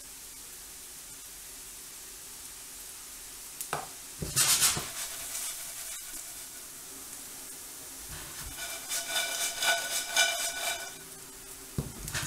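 Toast cubes frying in hot oil and margarine in a frying pan: a soft steady sizzle, broken about four seconds in by a short loud burst as the pan is tossed and the cubes slide and scatter. Later there is a louder stretch of about two seconds carrying a ringing, pitched sound.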